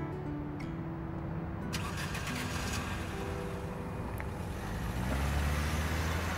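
A car engine starts and runs, its low rumble swelling about five seconds in as the car pulls away, under soft background music.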